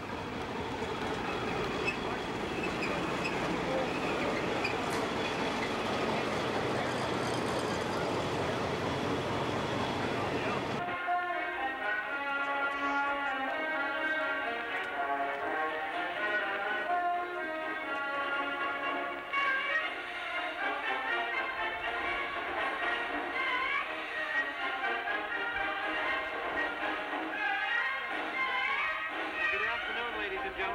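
For about the first eleven seconds, a crowd applauding: a steady, even wash of clapping. Then a sudden cut to music, which runs to the end.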